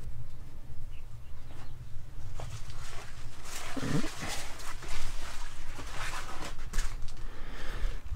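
Rustling and footsteps of someone walking through close-grown greenhouse plants, with a short animal call about four seconds in.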